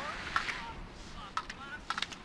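Slalom skis scraping over the hard-packed race course, with a few sharp clacks as slalom gate poles are knocked aside.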